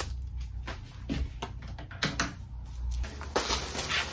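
A flat-packed fabric storage box being unwrapped from its plastic and unfolded: a run of short rustles and clicks, with a denser crinkling burst near the end.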